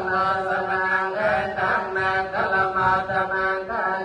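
Buddhist chanting in Pali, continuous, with the voices holding long, evenly recited tones.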